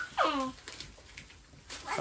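A brief whimpering cry that falls in pitch, about a quarter second in; a louder voice begins near the end.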